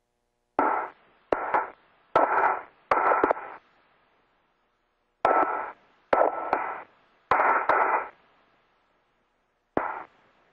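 Spacewalk air-to-ground radio loop keying on and off: eight short bursts of radio hiss, each opening with a sharp click, with no clear words in them.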